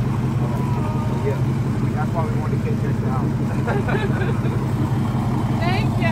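A vehicle engine idling close by, a steady low hum that does not change, with faint voices over it.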